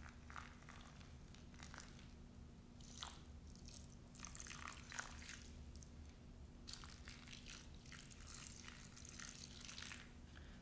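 Faint trickle and patter of a thin stream of water gently poured from a plastic pitcher onto dirt, sand and small rocks in a tray, over a low steady hum.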